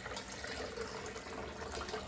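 Hot water being poured off a pot of boiled spaghetti noodles into a kitchen sink, a steady pour.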